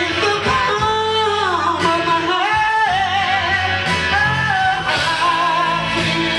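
Live rock band playing at full volume: electric guitar and keyboards over a steady bass, with a singer's voice carrying a sliding, wordless melodic line on top.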